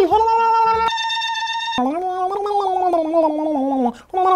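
A man's voice holding a drawn-out nonsense vocal sound. A short, flat electronic beep cuts in for about a second, and then comes a long wavering voiced sound that slowly sinks in pitch before stopping abruptly.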